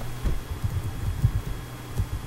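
Keystrokes on a computer keyboard, picked up by the microphone as a quick, irregular run of dull low taps while a short word is typed.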